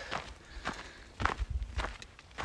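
Footsteps of a hiker walking on a dirt trail, about two steps a second.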